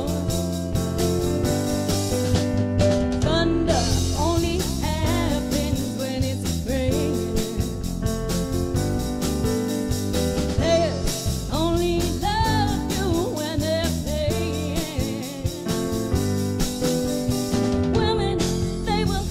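Live band playing a song: vocals over electric bass guitar, drum kit and electronic keyboard, with a steady drum beat.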